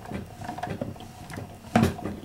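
Sizzix Big Shot die-cutting machine being hand-cranked, its rollers pressing a plate sandwich with a thin metal frame die through, with a low grinding and small creaks and cracks as the die cuts the cardstock; one louder creak near the end.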